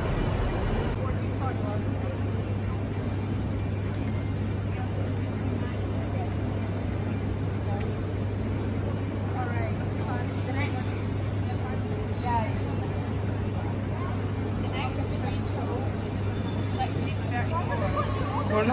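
Railway station ambience under a large trainshed: a steady low hum that sets in about a second in, with faint chatter of distant voices.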